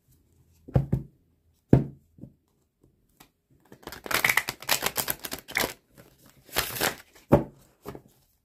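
Dust II Onyx tarot deck being riffle-shuffled by hand: the card edges flick together in a fast run of clicks, in two bursts, about halfway through. Two sharp knocks come before it as the deck is handled, and one more near the end.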